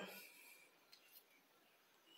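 Near silence: room tone, with a couple of faint light clicks about a second in.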